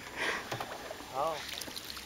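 Quiet water splashing around a small wooden boat on the creek, with a short faint voice about a second in.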